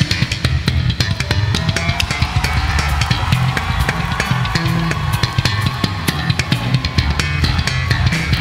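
Live rock band in an instrumental passage: a drum kit hit fast and densely over an electric bass guitar line. A faint held tone climbs slowly in pitch underneath.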